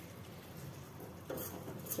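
Faint stirring of a thick cauliflower-and-pea sabzi with a metal spatula in a stainless steel pan, with a light scrape against the pan near the end.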